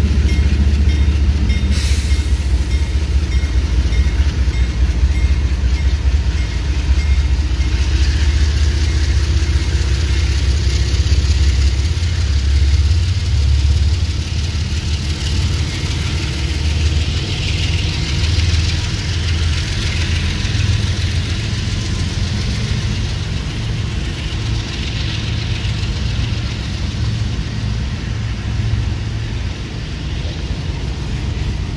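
CSX CW44AH diesel locomotive idling with a steady low rumble while freight cars roll past on the adjacent track, their wheels and couplers adding a constant rattle. There is one sharp clank about two seconds in.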